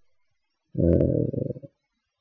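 A man's short hesitation hum, a closed-mouth 'mmm' lasting about a second, in the middle of a pause in his speech, with dead silence before and after it.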